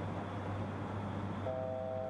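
Steady low hum of cockpit noise in the ATR. About one and a half seconds in, the altitude alert begins: a steady three-note chord, sounding as the aircraft comes within a thousand feet of its selected altitude.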